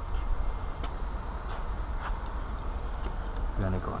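About three faint clicks, roughly a second apart, as a GT Tools glass-cutting tool is handled and set against a car's body, over a steady low rumble.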